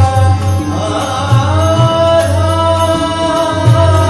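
A male voice sings long, held, gliding notes of a Hindustani devotional bhajan, with tabla strokes and harmonium accompaniment.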